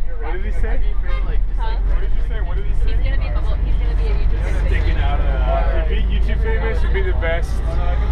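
Passengers' voices chattering inside a moving coach bus, over the steady low rumble of the bus engine and road.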